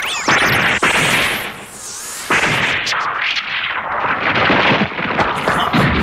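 Animated-series explosion sound effects as an energy beam blasts rock apart: a loud blast about a third of a second in, a brief lull, then a second, longer blast from a little after two seconds on.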